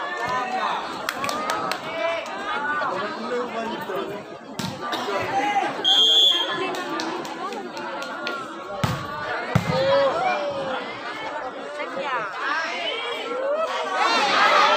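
Spectators chattering and calling out around a volleyball court, many voices at once. There is a short steady whistle blast about six seconds in, the loudest moment, and a couple of dull knocks a few seconds later.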